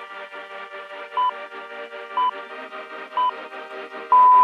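Workout interval timer counting down: three short, identical beeps a second apart, sounding over background music, marking the last seconds before an exercise starts.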